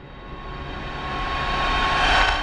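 Logo-intro sound effect: a rushing whoosh with a low rumble, like a jet passing, that swells steadily louder and peaks right at the end.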